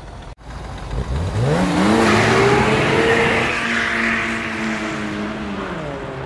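Sound effect of a car engine revving up, its pitch rising over about a second, then holding steady under a rushing hiss that eases off slightly toward the end.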